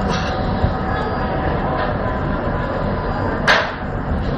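Noodle dough slapped once, sharply, against a steel counter near the end, over a steady low rumble of kitchen background noise.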